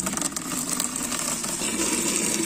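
Tap water pouring in a steady stream into a plastic bucket, splashing and frothing on the water already in it.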